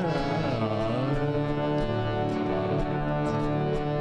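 Indian–jazz fusion band playing live: acoustic and electric guitars over bass guitar, with light hand-drum strokes. During the first second a melody line bends up and down in ornamented slides, then the notes settle into held tones.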